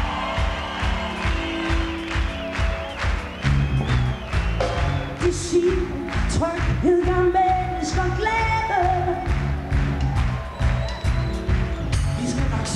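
Live pop-rock band playing a song on a festival stage, with a steady drum beat under a female lead vocal that rises clearly about a third of the way in and eases off near the end.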